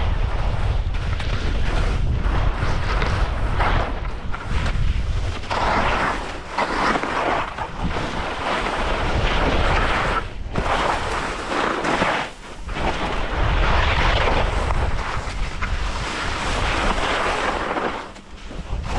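Wind buffeting the camera's microphone at skiing speed, with skis hissing and scraping over snow in swells that come and go with the turns.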